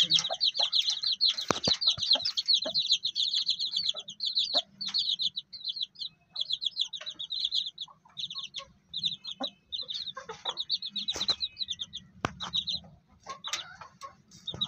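Chicks peeping: continuous quick runs of short, high-pitched cheeps, with a few scattered knocks among them.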